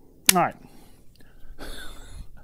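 Speech: a man says "right" with a falling pitch.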